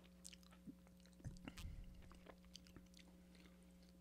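Faint chewing and crunching of Yan Yan biscuit sticks, a few soft crunches and mouth clicks, heaviest about a second and a half in, over a steady low hum.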